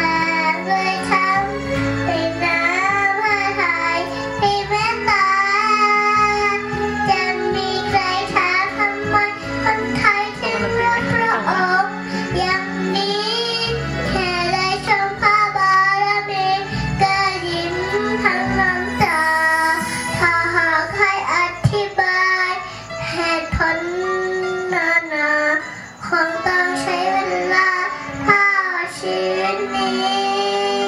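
A young girl singing continuously into a handheld microphone, with backing music underneath.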